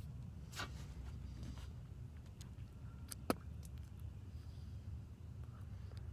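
Faint, steady low rumble of outdoor background noise, with one sharp click about three seconds in.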